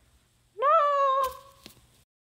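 A single high-pitched cry, like a cat's meow, about a second long: it rises at the onset, holds, then slowly trails off, with a sharp click near its end. It is the dying yelp of the character struck by the toothpick.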